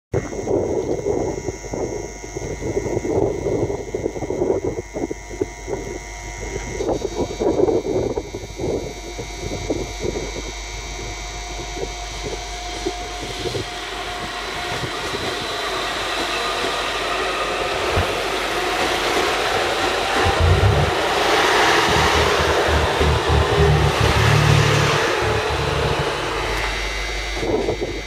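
HB-E210 series hybrid diesel-electric multiple unit pulling away from a station platform: its running noise builds steadily with a faint rising whine as it accelerates, loudest as the cars pass, with a run of low knocks from the wheels as the train goes by.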